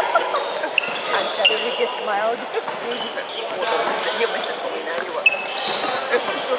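Sounds of an indoor basketball court during a stoppage: a basketball bouncing on the wooden floor a few times, short sneaker squeaks and background chatter from players and spectators, all echoing in a large sports hall.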